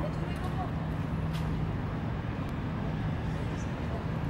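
Steady low rumble of city traffic, with faint voices of people nearby and a few small clicks.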